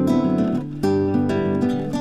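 Background music: an acoustic guitar strumming chords, with a fresh strum a little under a second in.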